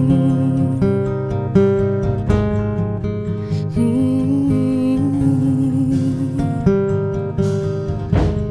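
Instrumental break in a slow acoustic song: acoustic guitar playing held chords that change every second or so, with no singing.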